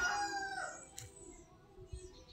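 The fading end of a long, drawn-out animal call whose pitch falls away over the first second, followed by a single faint click about a second in.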